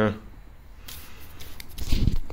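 A glossy paper instruction leaflet being handled by hand: light rustling with a few faint clicks, and a dull bump near the end.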